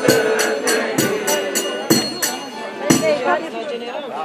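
Costumed Romanian New Year folk troupe chanting over rapid, rhythmic jingling bells and a few heavy beats. The bells and beats die away about three seconds in, leaving voices.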